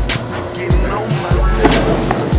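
Hip-hop music with deep bass kicks on a steady beat, under sharp hi-hat ticks.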